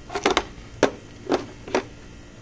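About five short clicks and knocks of a steel brake-line flaring tool being handled: the adapter is taken off its clamp block and set down on a plastic kit case.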